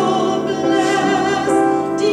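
A woman singing a Christian song solo, holding sustained notes while she accompanies herself with chords on a grand piano.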